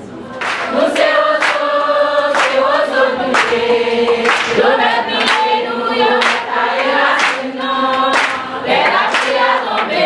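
A crowd of women singing together in unison, with rhythmic hand clapping at about two claps a second; the singing and clapping start about half a second in.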